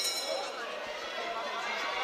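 Boxing ring bell rings briefly at the very start, signalling the start of the round, followed by a crowd talking and calling out in an arena hall.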